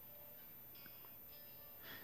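Near silence: faint room tone in a pause between sung lines.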